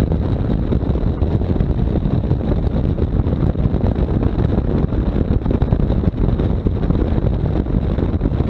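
Wind rushing over the microphone of a camera on a BMW R1200GS riding at cruising speed, a steady low rush mixed with engine and road noise.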